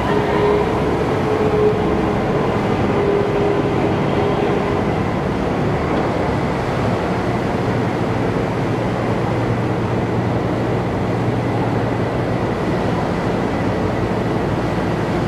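Steady, loud rumble of AAV-7A1 amphibious assault vehicle diesel engines running inside a ship's well deck, with a low hum and a faint whine during the first few seconds.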